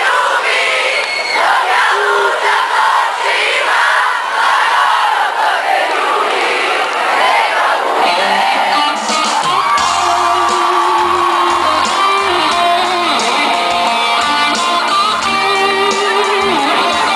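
A large concert crowd singing and shouting, then a live rock band's electric guitar and bass come in about halfway and play on.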